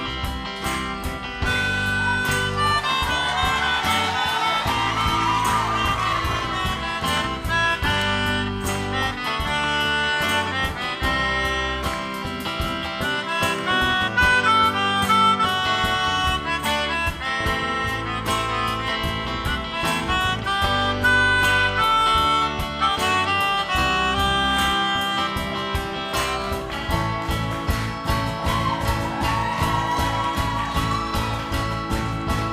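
Melodica playing a lead melody over a live band of acoustic guitars and drums, with no singing.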